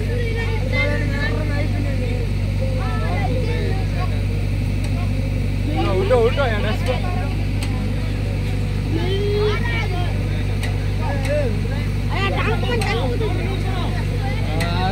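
Diesel engine of a JCB backhoe loader running steadily as it pulls an overturned backhoe upright by chain, with voices calling out at intervals, loudest about six seconds in.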